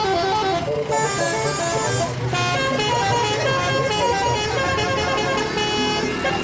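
Odong-odong tour train passing, its engine humming steadily under a loud electronic melody of short stepped notes.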